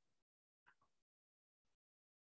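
Near silence: a faint hiss that cuts in and out, with a couple of very faint blips about a second in.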